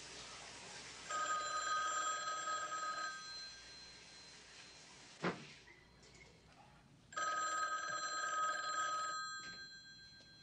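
A telephone ringing twice, each ring lasting about two seconds with a pause of about four seconds between them. A single sharp click comes midway between the rings.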